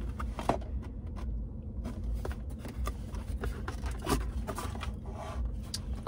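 A cardboard box being opened and handled: scattered short clicks and scrapes of the flaps and the packaging inside, over a low steady rumble.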